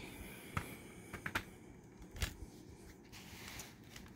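Plastic CD jewel case being handled and opened: four short, sharp plastic clicks in the first two and a half seconds, over faint handling noise.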